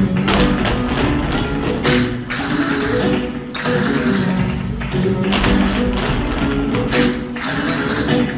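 Flamenco music with the dancers' shoes rapidly striking the stage floor in zapateado footwork. Dense runs of stamping come in several stretches over the music.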